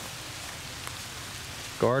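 Steady hiss of rain falling on leaves and undergrowth, an even wash of sound with no distinct drops.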